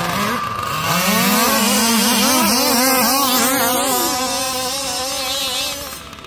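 Small gas two-stroke engine of a 1/5-scale RC car, revving up about a second in and then wavering up and down in pitch as the throttle is worked, loudest in the middle and easing off near the end.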